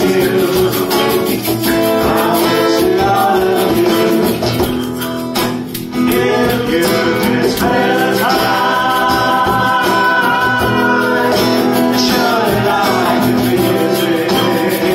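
A live song: acoustic guitar strumming under male voices singing, with long held notes in the second half and a short drop in the music about five and a half seconds in.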